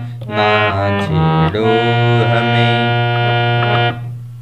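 Harmonium playing a melody phrase: a few short notes, then one long held note that stops just before the end, over a steady low drone.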